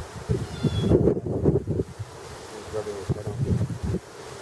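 Wind gusting across the microphone, an uneven low rumble that surges and drops.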